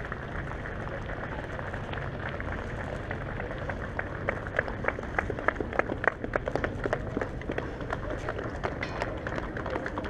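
Ride noise from a moving bicycle: a steady rush of wind on the bike-mounted microphone, with scattered irregular clicks and rattles that come thickest in the middle.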